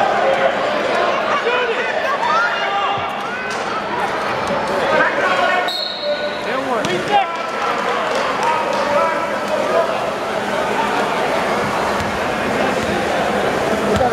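A basketball bouncing on the court during wheelchair basketball play, against a continuous background of players' and spectators' voices.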